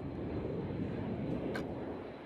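A rushing noise swell with no melody, building and then fading toward the end, as an atmospheric intro to a pop track before the music comes in. A faint click is heard about one and a half seconds in.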